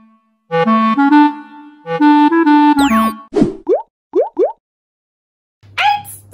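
Short cheerful musical jingle of a few quick melodic phrases with a swooping sound effect, followed by a few quick rising-pitch cartoon pops. A child's voice starts just before the end.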